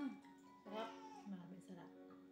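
A domestic cat meowing twice, once right at the start and again about a second in, over soft background music.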